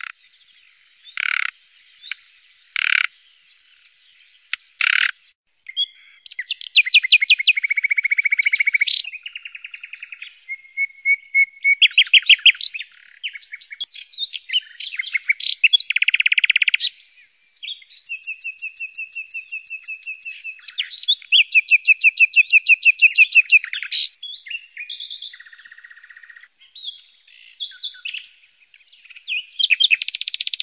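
Common nightingale singing. It opens with a few separate, spaced notes, then runs on a few seconds in into a varied song of fast, rapidly repeated notes and trills.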